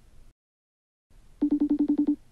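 Telephone ring tone: a rapid trilling electronic tone, about ten pulses a second, with one burst under a second long starting near the end, after a stretch of dead silence.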